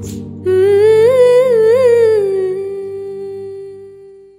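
End of a Tamil film song: a voice hums one long final note with a few wavering turns in the middle, over a soft low accompaniment, then holds it and fades out near the end.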